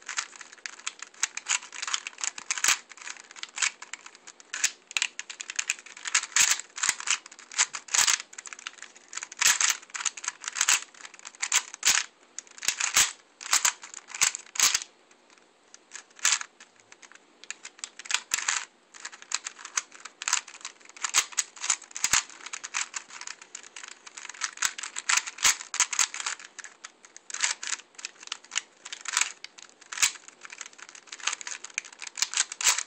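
Mozhi 3x3x5 Watchtower cuboid puzzle being turned rapidly: quick bursts of plastic clicking and clacking as the layers turn, broken by a few short pauses.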